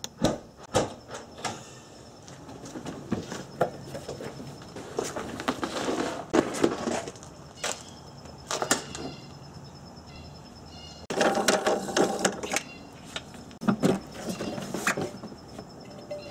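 Handling noises from a car's trunk: a string of clicks and knocks with rustling as the trunk is opened and the floor cover and space-saver spare wheel are lifted out, with a louder scraping stretch about two-thirds of the way in.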